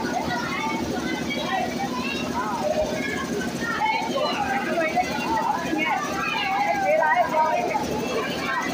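Several women's voices singing a Tesu folk song together, the voices overlapping and growing fuller in the second half, over a steady low drone.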